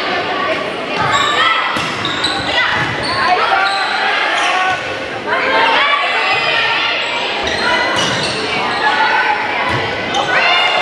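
Volleyball rally in a gymnasium: several sharp smacks of the ball being passed, set and hit, over voices of players and spectators calling out throughout.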